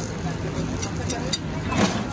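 Busy street ambience with steady traffic rumble and background voices, and a few light clicks of a metal spoon against the appam pan as masala is spread. A brief louder sound comes near the end.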